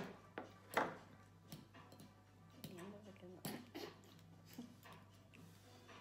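Cutlery clinking against plates and bowls at a meal: a handful of short sharp clicks, the loudest at the very start, with faint murmured voice between them.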